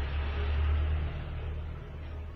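Steady low hum with a hiss of background noise, easing off slightly after about a second.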